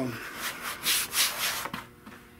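Hands rubbing and sliding over a freshly vinyl-covered lower glove-box panel for a 1964 Buick Riviera as it is handled: a run of dry rubbing swells that fade out near the end.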